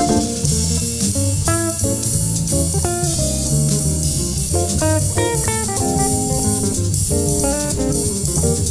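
Jazz improvisation on an Epiphone ES-175 hollow-body electric guitar, a line of picked notes over piano chords, with drums keeping time.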